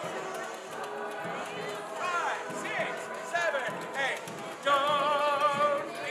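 Street parade music with voices: pitched voices slide up and down, then one loud held note with vibrato lasts about a second near the end.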